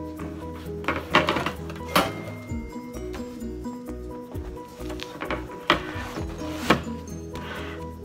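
Background music playing under a few sharp knocks and clunks as a metal loaf pan is tipped and handled and a baked loaf is turned out onto a wire cooling rack.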